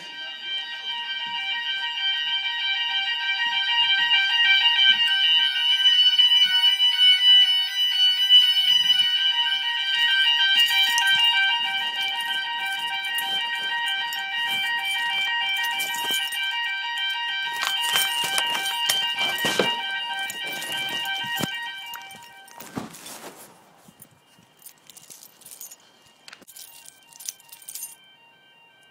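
Electronic fire alarm sounders of a home fire alarm system sounding a shrill, continuous tone made of several pitches at once. The alarm was set off by the kitchen manual call point. Scattered knocks come through it, and about 22 seconds in the loud sounding cuts off, leaving a much fainter, broken tone.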